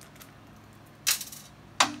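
Brief metallic rattle, like small steel bolts set down on a steel workbench, about a second in.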